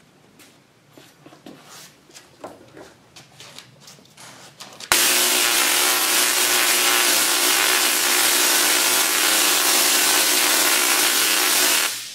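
BTC50 table-top Tesla coil firing, its sparks arcing from the toroid to a nearby wire with a loud, harsh buzzing crackle. The sound starts abruptly about five seconds in and cuts off just before the end, after a few faint ticks.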